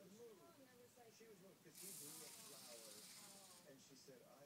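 Flip-dot display panel flipping a large number of its dots at high speed, heard as a rapid rustling hiss that starts a little under two seconds in and lasts about a second and a half.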